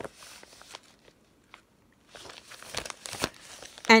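Clear plastic packaging of a cross-stitch kit crinkling as it is handled, in two spells of rustling with a short quiet lull between them.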